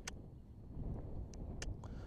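Faint low wind rumble on the microphone, with a few faint ticks scattered through it.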